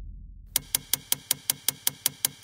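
A low rumble dying away, then an even mechanical ticking starting about half a second in, at about five ticks a second.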